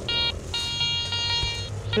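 Garrett metal detector giving its target tone: a short electronic beep, then a longer steady beep of about a second, as the search coil passes over buried metal. It is a good signal.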